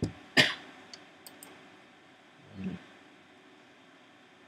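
A man clears his throat with a short cough about half a second in, the loudest sound here, followed by a few faint clicks and a brief low hum of the voice near the middle.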